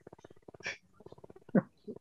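Men chuckling quietly over a video call, low breathy pulsing laughter with a few short louder bursts of laughing.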